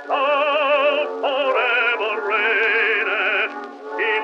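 Operatic bass-baritone voice singing a hymn in a 1917 acoustic recording, holding long notes with a wide vibrato, with a brief dip in level near the end. The sound is thin and narrow, lacking deep bass and high treble, as typical of an early acoustic recording.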